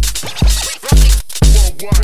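Live-coded electronic dance music from TidalCycles: a steady kick drum about two beats a second, with short pitch-bending sample sounds over it in the second half.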